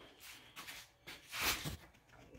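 Mostly quiet, with a short rustle of a phone being handled and moved about a second and a half in; the slab saw is not running.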